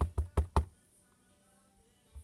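Clear acrylic stamp block with a photopolymer stamp tapped onto an ink pad, inking the stamp. There are four quick taps about five a second, then they stop.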